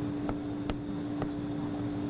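Chalk writing on a chalkboard: a handful of light, short taps and scratches as characters are written, over a steady low hum.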